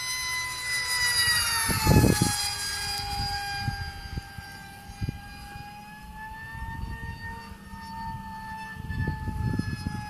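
Electric motor and propeller of the Hadron, a small RC plane running on a 4S LiPo, whining steadily overhead. Its pitch drops about two seconds in as it passes, then holds with a slight waver. There are low rumbles about two seconds in and again near the end.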